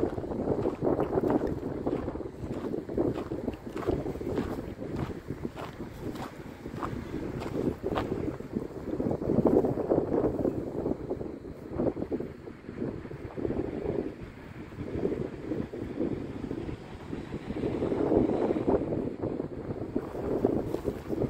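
Wind buffeting the microphone in uneven gusts. Short dry crackles of dead grass being trodden and pushed through come over it, mostly in the first several seconds.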